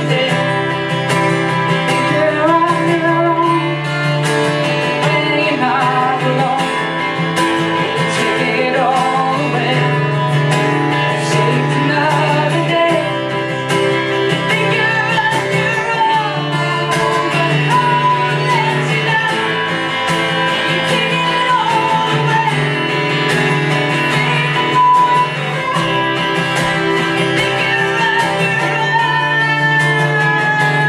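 Two acoustic guitars strummed together while a woman sings over them, a live acoustic duo playing steadily.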